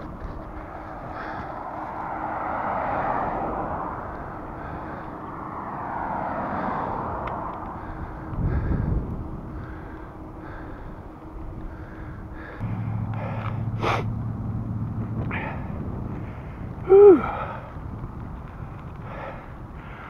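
A cyclist's heavy breathing through a face mask while riding, with wind and road noise, swelling and fading slowly. A steady low hum comes in for about three seconds in the second half, and there is a short laugh near the end.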